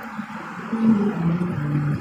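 A woman's voice making a few drawn-out, hummed tones that step down in pitch, over a steady background of street noise.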